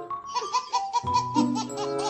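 A baby laughing in a quick run of short, repeated laughs over background music.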